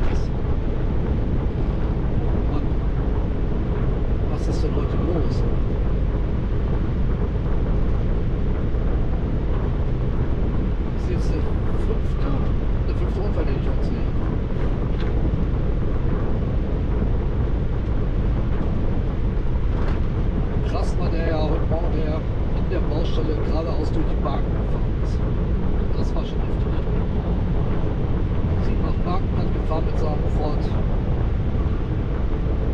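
Steady road, engine and wind noise inside the cab of a vehicle driving at motorway speed.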